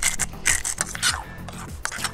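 Pepper grinder being twisted by hand, cracking black peppercorns in a run of quick rasping, ratcheting strokes that stop after about a second.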